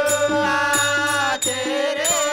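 Telugu devotional folk bhajan: a voice holds one long note for about a second and a half, then moves to a new note, over harmonium. Under it run a steady tabla beat and small hand cymbals (talam) jingling.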